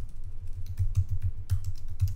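Typing on a computer keyboard: a quick, steady run of keystroke clicks as a command is entered at a terminal.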